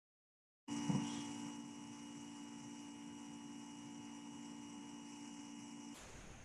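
Dead silence, then a steady electrical hum with a faint high whine cuts in abruptly under a second in, with a brief knock just after it starts.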